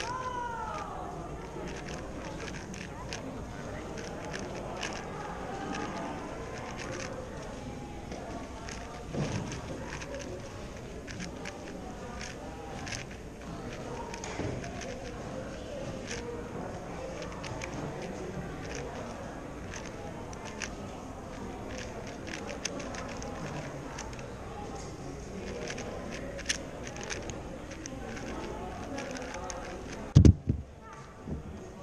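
A 4x4 speed cube being turned quickly by hand: a fast, irregular run of plastic clicks and clacks as the layers turn. Voices of other people talking can be heard underneath.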